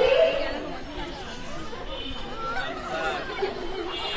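Speech and chatter: several voices talking over one another, loudest just at the start.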